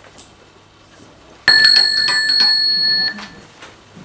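An electric doorbell rings once, a bright, loud ringing of about a second and a half that starts about a second and a half in and cuts off sharply.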